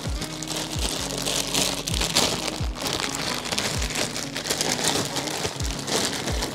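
Thin plastic packaging bag crinkling and rustling as it is handled and opened, over background music with a bass beat about once a second.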